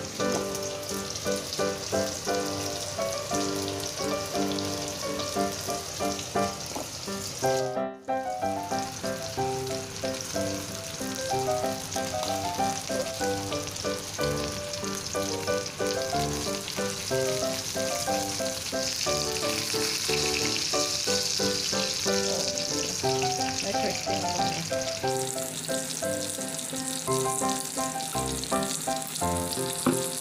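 Oil sizzling as breaded chicken breast fillets shallow-fry in a pan, under background music with held, changing notes. The sound cuts out briefly about eight seconds in.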